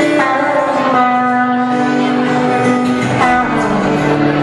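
Live acoustic music: a guitar playing, with long held melody notes that change every second or so.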